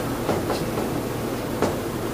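Marker pen writing on a whiteboard: a few short strokes over a steady background hiss.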